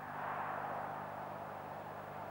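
Faint, steady background noise with a low hum underneath, from an old recording of a televised football match; there are no separate sounds, no distinct cheers and no ball strikes.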